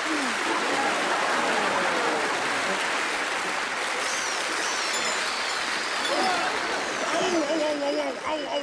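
Audience applauding and cheering at the end of a musical number, a steady wash of clapping. A voice comes in over it near the end.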